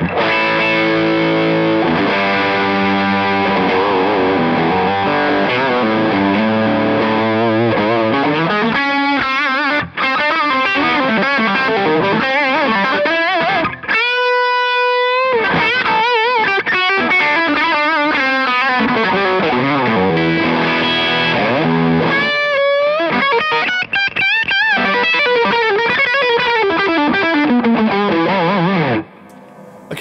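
Gibson Les Paul Traditional electric guitar played through an overdriven amp: chords and riffs at first, then lead lines with string bends and vibrato, with one long held note about halfway through. The playing stops about a second before the end.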